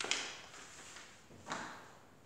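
Two brief handling noises, about a second and a half apart, each fading out quickly.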